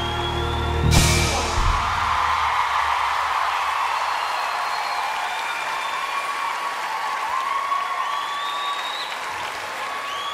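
The live band's final held chord ends with a crash about a second in. The audience then applauds, with high cheers and whoops over the clapping.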